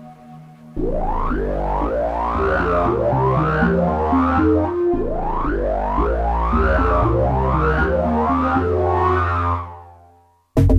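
Novation Summit synthesizer playing a deep bass patch: a stepping bass line whose filter sweeps open and shut again about once a second. It starts about a second in and fades out near the end.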